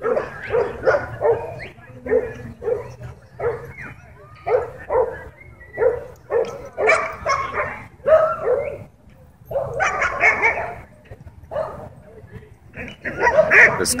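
A dog yipping and barking over and over, a few short calls a second with brief pauses between them.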